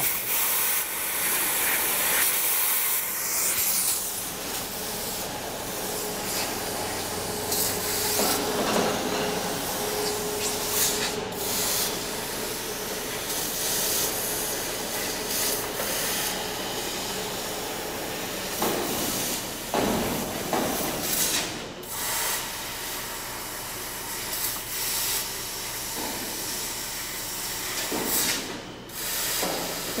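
1 kW fiber laser cutting machine cutting lettering into steel sheet: a steady hiss of assist gas from the cutting head, dropping out briefly a few times as the head moves between letters. A faint steady hum is heard for a few seconds about a fifth of the way in.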